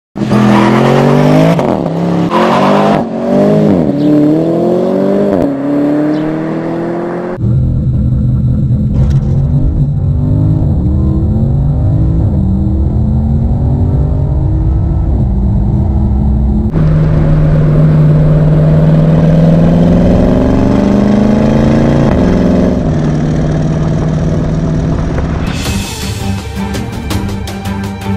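Porsche Panamera Turbo S E-Hybrid's twin-turbo V8 accelerating hard. The pitch climbs and drops back at each upshift, heard first from outside and then with a deeper, heavier tone from inside the cabin.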